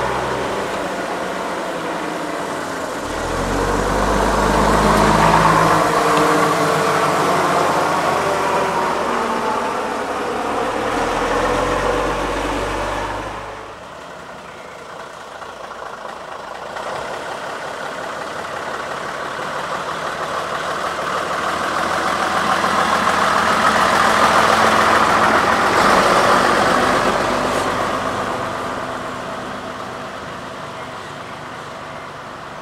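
Diesel engines of vintage double-decker buses. First a bus engine runs and pulls away with its note stepping up and down; then, after a sudden break about 14 seconds in, a Routemaster's engine approaches, grows loudest as it passes a little before the end, and fades as it drives away.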